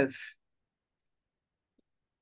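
A spoken word trailing off in the first third of a second, then dead silence.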